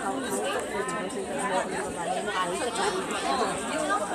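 Chatter of several people talking at once, voices overlapping at a steady level.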